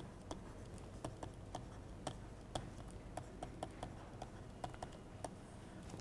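Faint, irregular clicks and taps of a stylus tip on a tablet as words are handwritten, a few taps a second, over a low steady hum.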